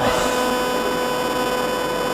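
Steady electrical hum and hiss with a constant whine, at about the level of the speech around it.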